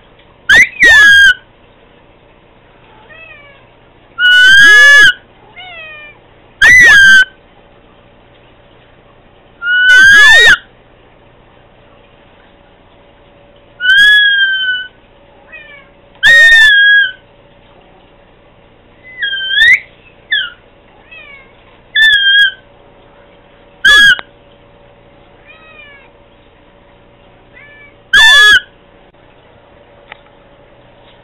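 Domestic cat meowing over and over: about ten loud meows spaced a few seconds apart, with softer short calls between them, each call bending up and down in pitch.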